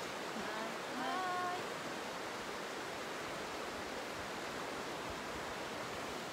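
Steady rushing of a mountain river flowing through a gorge, with faint distant voices briefly about half a second to a second and a half in.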